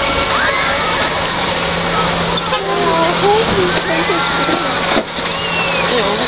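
Indistinct voices talking and calling over steady outdoor background noise, with a steady low hum underneath.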